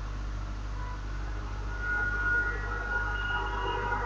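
Steady low electrical hum with room noise, with faint high thin tones coming in about halfway through.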